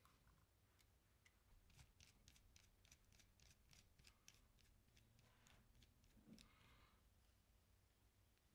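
Near silence, with very faint scattered clicks.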